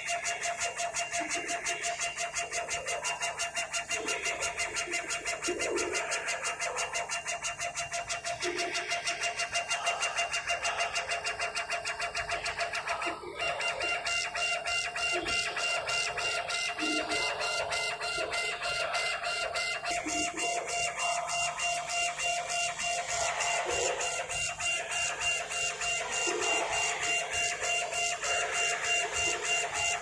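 CO2 laser engraving machine's head carriage, driven by stepper motors on belts and rails, shuttling rapidly back and forth as it raster-engraves lettering into a wood board: a fast, even pulsing whir with a steady tonal motor whine.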